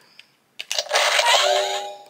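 Power Rangers Dino Fury Morpher toy playing an electronic sound effect through its small speaker on being switched to full power: a noisy burst about half a second in, with a held electronic tone joining it and fading near the end.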